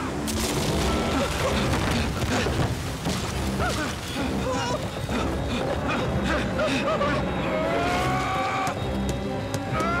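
Dramatic soundtrack music with sustained low tones, laid over sound effects of repeated thuds and crashes. A rising, sliding tone comes in about three-quarters of the way through.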